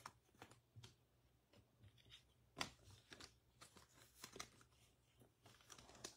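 Near silence with a few faint, scattered clicks and rustles of trading cards and foil card packs being handled, the strongest about two and a half seconds in.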